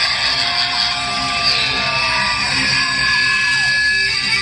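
Live rock band playing loudly through a concert PA, led by electric guitar, with several guitar lines sliding down in pitch.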